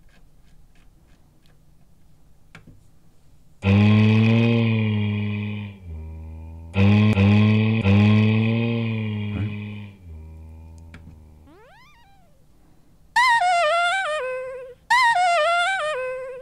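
Scat vocal sample played back from a Rossum Assimil8or eurorack sampler, pitched down two octaves into a deep, slowed voice: three notes, each fading out over a long release, after a few faint clicks. Then the pitch sweeps up and two notes sound pitched well above the original, high and wavering.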